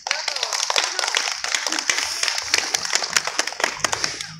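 Audience applauding, a dense patter of claps with voices mixed in, dying away near the end.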